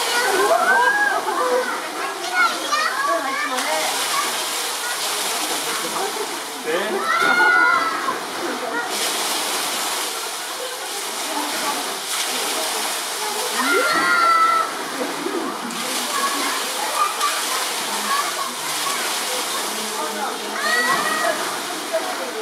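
Steady rush of running water, with people's voices rising over it in short bursts four times: near the start, about a third of the way in, halfway through and near the end.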